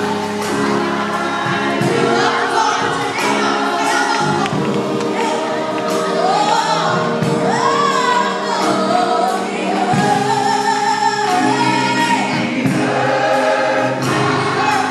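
Gospel choir singing with a gliding lead melody over steady instrumental backing.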